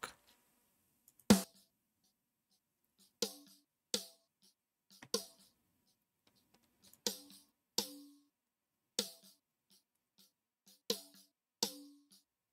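Soloed snare drum track playing back, about nine sharp hits in an uneven pattern with gaps between them; some hits carry a short low ring of the drum body. The snare runs through Soothe2 on a snare de-knock setting, meant to tame the harsh snare knock.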